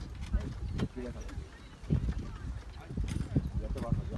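Voices talking in the background, unclear and untranscribed, over a steady low rumble, with a few short knocks.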